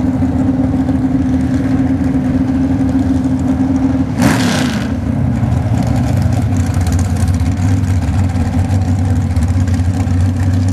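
Dragster engine idling with a steady note, then a short, sharp burst of noise about four seconds in, after which the engine runs on at a lower pitch.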